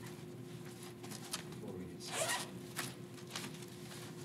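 Someone handling things at a lectern: a few short rustles and scrapes, the loudest a longer zip-like swish about two seconds in, over a steady low room hum.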